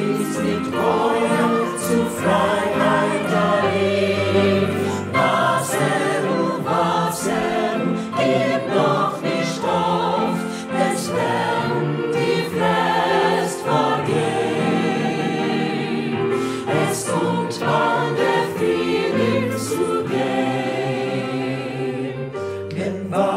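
Mixed choir of men's and women's voices singing a Yiddish choral song in parts, with piano accompaniment.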